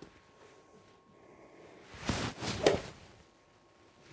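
A golf iron swishing through the air in a full practice swing, a short rush of air about halfway in with two peaks close together; no ball is struck.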